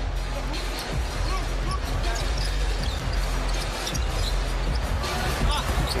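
Basketball being dribbled on a hardwood court during live play, under steady arena crowd noise and arena music with a steady low bass.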